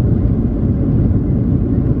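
Steady low rumble inside the cabin of a Boeing 737-700 moving slowly on the runway, engine and airframe noise heard from a window seat over the wing.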